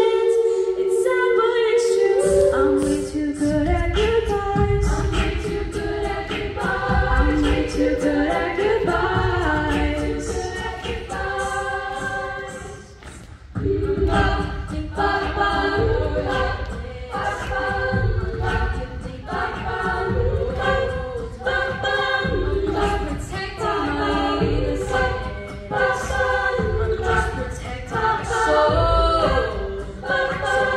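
Mixed-voice a cappella group singing in close harmony, with a sung bass line and vocal percussion beat. The bass and beat come in about two seconds in, drop out briefly about halfway, then return.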